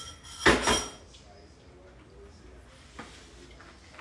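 Kitchenware clattering as it is handled: one loud clatter about half a second in, then quieter handling and a light knock about three seconds in.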